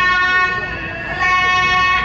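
Thai piphat music: a pi, the Thai quadruple-reed oboe, holds long steady notes rich in overtones. It plays a high note at the start, softens in the middle, then settles on a lower held note a little past a second in.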